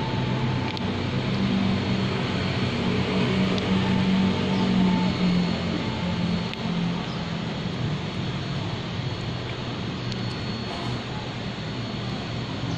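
Street traffic noise with a motor vehicle engine running nearby; its low hum is strongest in the first half and fades after about seven seconds.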